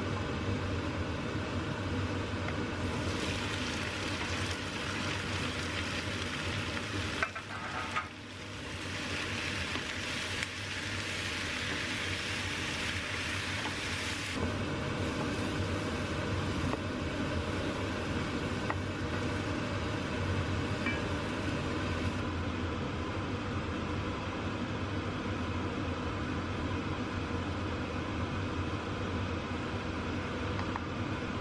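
Garlic and then diced vegetables sizzling in oil in a nonstick wok while being stirred with a wooden spoon, sautéed until soft and releasing their juices. The sizzle is strongest over the first half, over a steady low hum.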